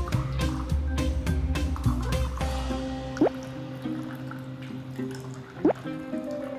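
Background music, its beat dropping out about two and a half seconds in, over sparkling water being poured from a bottle into a glass bowl. Two loud, short, rising plinks of water drops stand out, about three seconds in and near the end.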